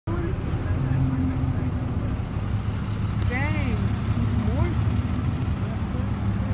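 Steady low rumble of a car's engine and road noise, heard from inside the cabin.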